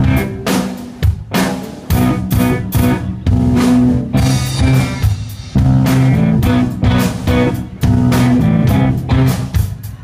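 Live rock band playing with electric guitars, electric bass and a drum kit, the drums beating steadily. About four seconds in, the drumming drops out for a moment under a ringing chord, then comes back in.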